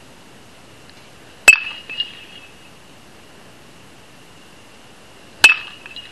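A metal baseball bat hitting a ball twice, about four seconds apart, each hit a sharp ping with a short ringing tail. A smaller knock follows about half a second after the first hit.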